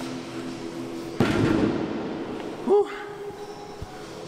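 Heavy dumbbells dropped onto a gym floor with one loud thud about a second in, followed by a man's short grunt near the end, over faint background music.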